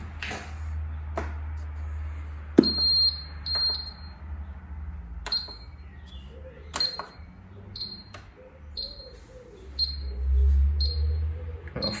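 Reebok ZR10 treadmill console beeping: a string of short, high-pitched beeps as the program is set and started, several a second apart. There are sharp clicks and knocks of buttons and handling, the loudest one a few seconds in, and a low rumble at times.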